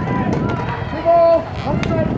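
Overlapping voices of players and spectators at a youth baseball game, with one loud, held shout about a second in and a single sharp click near the end.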